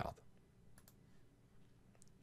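Near silence: room tone with a few faint, short clicks, after the tail of a spoken word at the very start.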